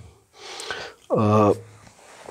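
A man draws an audible breath in, then makes a short wordless hum that falls in pitch: a hesitation before answering a question.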